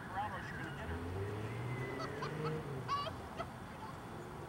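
Birds calling: several short, wavering calls, the sharpest about three seconds in, over a faint low hum.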